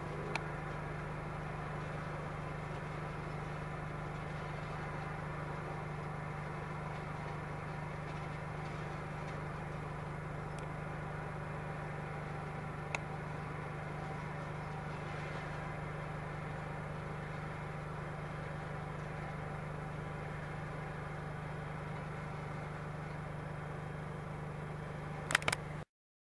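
Tractor-mounted McConnel Power Arm flail hedge cutter at work: a steady drone of the tractor engine and spinning flail head, with a few sharp ticks. The sound cuts off suddenly near the end.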